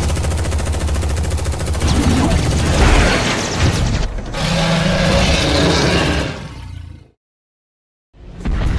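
Action-trailer sound effects: a rapid rattle of gunfire from an armored mech's weapon over a deep rumble. The sound fades about six seconds in and cuts to silence a second later.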